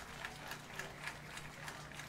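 Soft, evenly spaced clicks, about three to four a second, marking out a tempo just before the band starts a tune, over a faint steady hum from the stage sound system.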